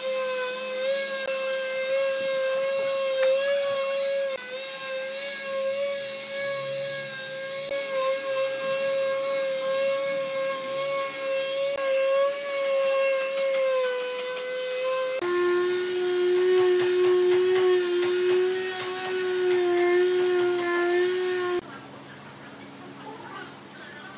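Makita orbital finishing sander with a rectangular pad running on a solid-wood tabletop, a loud, steady motor whine. About fifteen seconds in the whine drops abruptly to a lower pitch, and it cuts off sharply just before the end.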